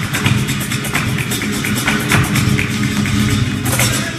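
Live flamenco: acoustic guitars strumming under a dense run of sharp, fast percussive strikes, with a louder cluster of strikes near the end.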